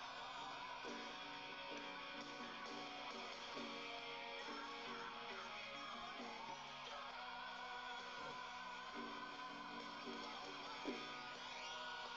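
Guitar music: strummed chords, a new strum about every second.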